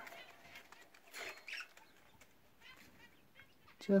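Budgerigars chirping faintly, with a short burst of calls about a second in and a few soft calls scattered after it.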